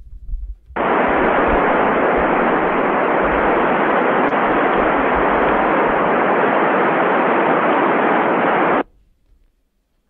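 Steady hiss of radio static from the ground station's amateur-radio receiver with no station coming through. It starts about a second in and cuts off suddenly near the end: the ISS downlink has faded out at loss of signal.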